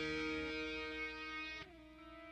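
Final chord of a hard rock song on distorted electric guitar, ringing out and fading. About one and a half seconds in, the pitch slides down and a quieter held note carries on.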